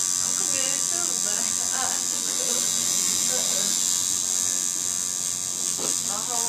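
Coil tattoo machine buzzing steadily as it runs needles into the skin, a constant high-pitched electric buzz.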